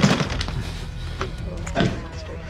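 A sharp crack right at the start, fading quickly, over soft background music; a voice says a word near the end.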